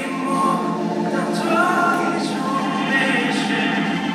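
Live band music with a male lead voice singing into a handheld microphone, the sung line gliding in long held notes.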